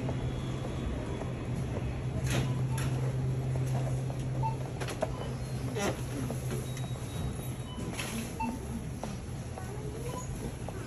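Busy store ambience heard while walking: a steady low hum that eases off about six seconds in, with scattered clicks and knocks and a couple of short beeps.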